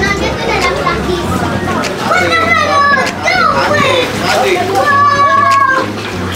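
Young children's voices, calling and chattering, with music playing underneath.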